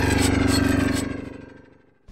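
Intro sound effect: a low, steady drone with a rapid flutter, fading away over the second half to near silence.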